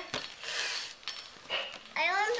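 Torn wrapping paper rustling and a cardboard toy box being handled, with a couple of light taps on the box.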